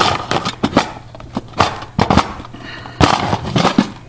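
Wooden utensil drawer being slid out of a wooden camp kitchen box, its metal cooking utensils rattling inside: a string of irregular sharp knocks and clatters, the loudest about a second and a half, two and three seconds in.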